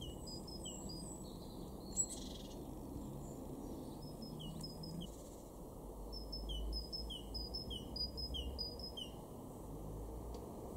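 Great tit singing its repeated two-note song, a short high note dropping to a lower falling note, in runs of several phrases, the longest in the second half. A single sharp click about two seconds in.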